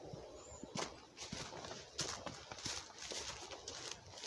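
Footsteps on a dry forest trail, faint uneven crunches of leaf litter and twigs underfoot.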